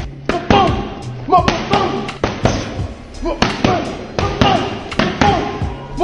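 Boxing gloves striking focus mitts in quick combinations: sharp smacks about two to three times a second, with short voiced sounds among them and background music.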